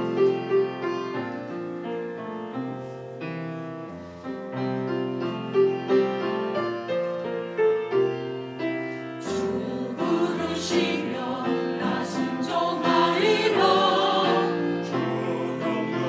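Church choir anthem with piano: the piano plays a chordal introduction, and the choir comes in singing about nine seconds in, over the piano.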